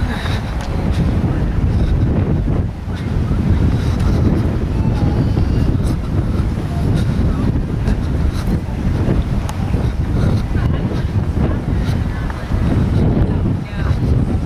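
Wind buffeting the camera's microphone: a loud, low rushing noise that rises and falls in gusts throughout.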